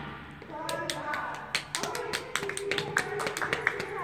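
The music fades out, then scattered, uneven hand claps from a few people, mixed with voices talking.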